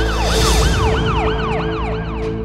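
Siren sound effect wailing up and down about three times a second, over a steady droning music bed, with a brief whoosh about half a second in.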